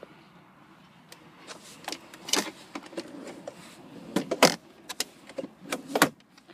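Plastic clicks and knocks from a minivan's centre-console cup-holder tray being pulled out and handled: a string of separate sharp knocks, the loudest about four and a half seconds in.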